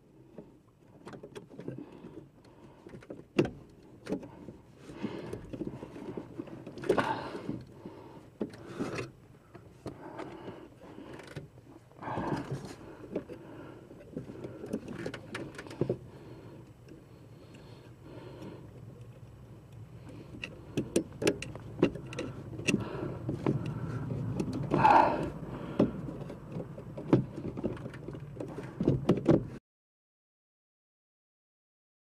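Wrench and hardware clicking and knocking against metal under a dashboard as a brake booster is fastened at the firewall and its pushrod is hooked onto the brake pedal, with rustling handling noise between the knocks. The knocks come thicker and louder in the last ten seconds, and the sound cuts off suddenly near the end.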